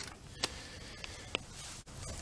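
Quiet outdoor background with two small sharp clicks, one about half a second in and one a little past a second.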